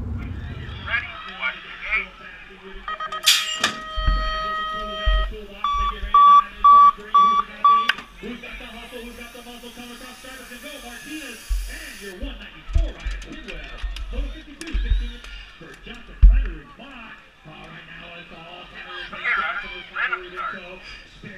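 BMX start-gate cadence: a long electronic tone, then a rapid run of short, identical beeps, with voices and low thumps around the gate.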